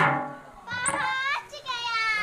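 A single drum stroke at the start that dies away, then a high-pitched voice calling out twice in long, drawn-out cries, the second one falling in pitch.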